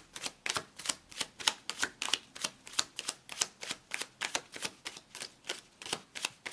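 A tarot deck being shuffled by hand: cards clicking and slapping together in quick, even strokes, about three a second.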